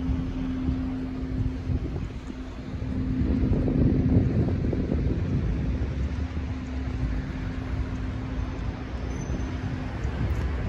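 Street traffic: cars and vans driving past, with a louder vehicle pass swelling about three to five seconds in and a steady engine hum under the first half.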